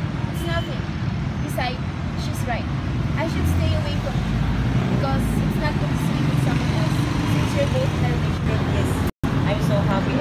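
Steady low rumble of road traffic with indistinct voices over it. The sound drops out for an instant near the end.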